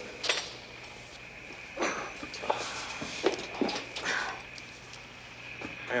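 Scattered soft knocks and rustles of people moving about, over a faint steady hum.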